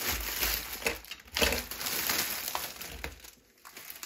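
Thin clear plastic bag crinkling and rustling as hands pull a magazine and its packed-in extras out of it. The crinkling breaks off briefly about a second in and stops about three seconds in.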